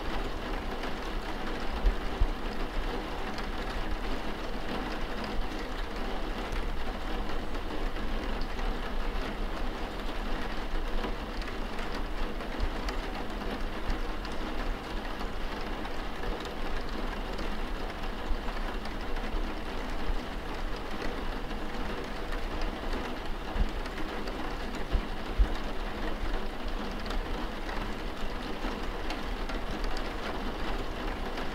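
Steady rain falling, with a low rumble underneath and a few brief low thumps scattered through it, two close together near the start and a few more in the last third.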